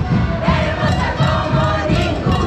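A large troupe of women carnival dancers singing in chorus and shouting, over carnival band music.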